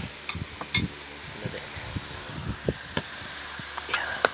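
A metal fork clinking twice against a ceramic plate in the first second, among soft knocks and handling noises, with more clicks near the end.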